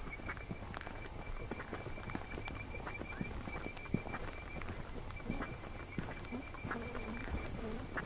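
Footsteps walking at an even pace on an asphalt road, as soft irregular scuffs and taps. Insects chirp and trill steadily in the background.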